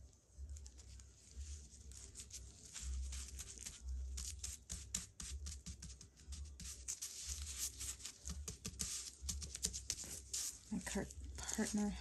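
Tissue paper, wet with Mod Podge, crinkling and crackling under gloved fingertips as it is pressed and smoothed flat, in many small quick crackles.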